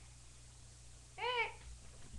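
A single short high-pitched meow-like call, rising then falling in pitch, a little over a second in, over a faint low hum.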